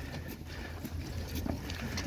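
Low, steady rumble of wind on the microphone, with faint scattered ticks from a crowd walking.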